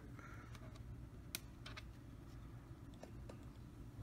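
A few faint, scattered clicks and taps of a plastic LCD writing tablet and its stylus being handled, one a little sharper about a second in, over a low steady room hum.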